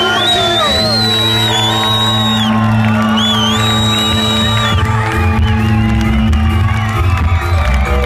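Live band music played loud through a concert PA, heard from inside the crowd, with the audience whooping and cheering over it.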